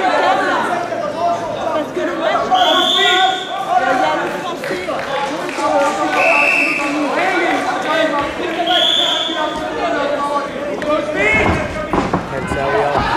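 Voices calling out across a large echoing hall, with three high, drawn-out squeaks a few seconds apart and a dull thud near the end.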